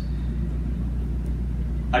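A steady low hum of room tone with no other distinct sound. A man's voice starts right at the end.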